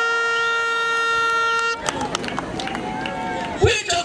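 A horn sounds one long, steady note and cuts off suddenly under two seconds in, giving way to crowd voices.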